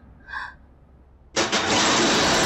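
Metal rolling shutter being pulled down, a sudden loud rattling clatter starting about a second and a half in and carrying on.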